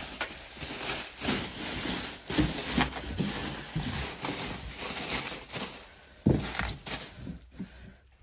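Bubble wrap crinkling and rustling as it is pushed and tucked around a saddle inside a cardboard box, in a quick run of short crackles. A louder single thump comes about six seconds in.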